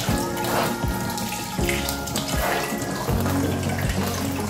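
Kitchen tap running water onto soaked corn pulp as it is squeezed by hand through a sieve, with background music playing over it.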